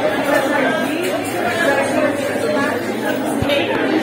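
Many people talking at once in a crowded restaurant dining room, a steady din of overlapping conversation.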